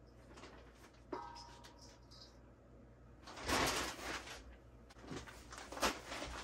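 A knock against a stainless steel mixing bowl, which rings briefly about a second in. Then loud crinkling of a plastic bag of perlite as it is handled and opened, with a last crackle near the end.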